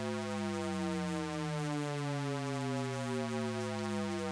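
Shepard tone from the Arturia Pigments 4 synthesizer's Harmonic engine, a steady held sound whose stack of partials glides slowly and evenly downward, so it keeps seeming to descend in pitch without ever getting lower. It is thickened by the Super Unison effect and reverb.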